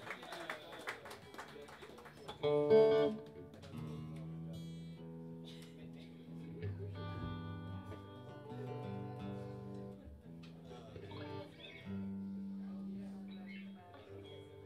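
Guitars played loosely between songs, picking out single sustained notes that change every second or two, with one short, loud strummed chord about two and a half seconds in.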